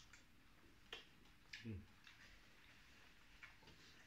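Near silence with faint eating sounds: a few soft clicks and smacks of chewing and lips, the clearest about a second in and again halfway through.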